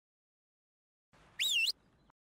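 A short whistle-like cartoon sound effect about a second and a half in: one tone sliding up, dipping and sliding up again, lasting about a third of a second.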